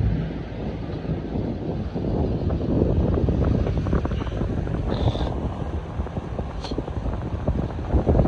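Wind buffeting the microphone on a moving motorboat, a steady rough rushing with the boat's engine and water noise underneath.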